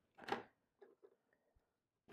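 Faint handling sounds of felt-tip markers on a tabletop: a soft knock about a quarter second in as a marker is set down or picked up, then a few light clicks as the next marker is handled and its cap comes off.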